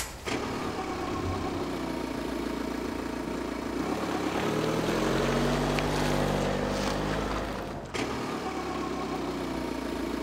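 A car engine sound effect: a car driving past, swelling and bending in pitch through the middle and easing off, with a short break about eight seconds in.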